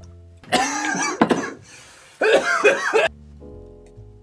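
Soft background music, broken by two loud bursts of wordless throat sounds from a man, like coughing or throat clearing. The first comes about half a second in, the second about two seconds in.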